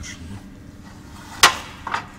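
A single sharp knock about one and a half seconds in, then a lighter one just before the end, over a steady low hum.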